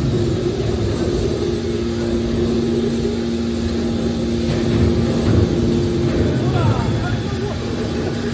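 Hydraulic scrap metal baler running as its hinged top lid closes: a steady hydraulic hum made of two held tones over a low rumble. The higher tone stops about six seconds in, and a few short squeaks follow.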